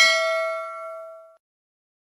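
Subscribe-button bell sound effect: a single bright bell ding ringing out and fading away about a second and a half in.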